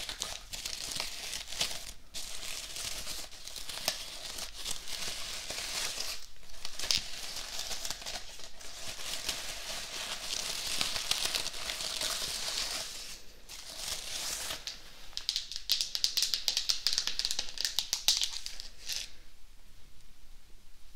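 Artificial flowers rustling and crinkling close to the microphone as long-nailed fingers brush and scrunch their petals and beaded stems. There are brief pauses, and the rustling is busiest shortly before the end.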